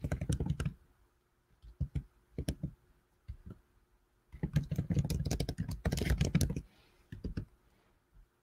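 Typing on a computer keyboard in bursts of quick keystrokes: a short run at the start, a few keys around two seconds in, a longer run from about four and a half to six and a half seconds, and a couple of last taps near the end.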